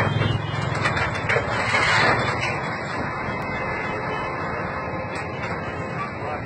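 A vehicle engine running steadily, a low rumble that eases slightly after about two seconds.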